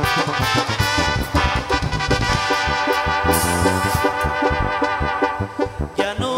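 Live tierra caliente band playing an instrumental passage: a brass-like melody on keyboards over electric bass and a drum kit keeping a steady beat.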